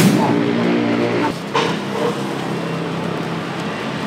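Broadcast logo-bumper transition effect: a sudden rushing sweep that falls in pitch, a brief chord of sustained musical tones, then an even rushing noise.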